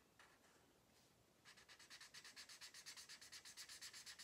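Felt-tip marker scribbling on paper: quick, soft back-and-forth colouring strokes that start about a second and a half in and run on in a fast, even rhythm.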